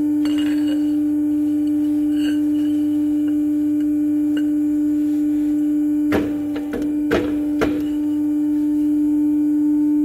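Steady single-pitched hum of a metalworking press's motor running, with three sharp metal knocks between about six and eight seconds in as a steel tube is handled at the die.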